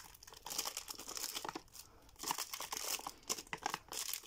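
Clear cellophane wrap crinkling and tearing as it is pulled off a cardboard perfume box, in two bouts of crackling with a short pause about halfway through.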